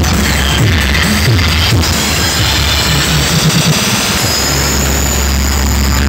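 Loud electronic dance music played through a DJ truck's sound system. Heavy bass runs with repeated falling bass sweeps, then settles into a steady deep bass drone about four seconds in.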